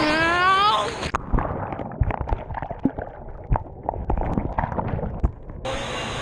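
A rising yell for about the first second, then the microphone goes under the pool water: muffled underwater gurgling and sloshing with scattered knocks for about four seconds. Near the end the open-air hubbub of a busy indoor pool suddenly returns.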